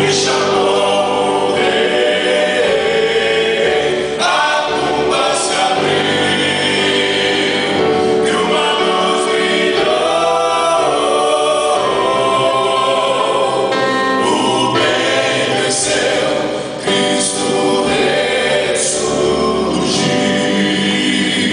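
A men's gospel vocal group singing together into microphones, several voices in harmony, with an electronic keyboard accompanying.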